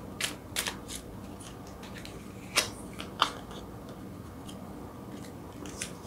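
Tarot cards being handled: a few quick light clicks in the first second, then two louder sharp snaps about two and a half and three seconds in, as a card is drawn from the deck and laid on the spread.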